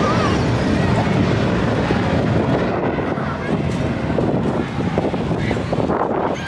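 Wind buffeting a handheld camera's microphone outdoors, a loud steady rushing that eases a little about halfway through, with faint voices in the background.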